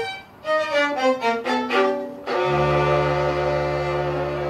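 Small string ensemble of violins, cello and double bass playing. After a brief break, a quick run of notes steps downward, then a full chord with low cello and bass notes is held from about two and a half seconds in.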